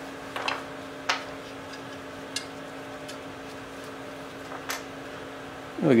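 A few light clicks and rustles as a paper gasket is peeled off the cylinder face of a cast-iron small-engine block, over a steady low hum.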